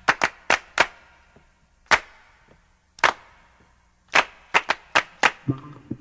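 About a dozen sharp percussive hits. Four come quickly at the start, then single hits about a second apart, then a faster run near the end as music begins.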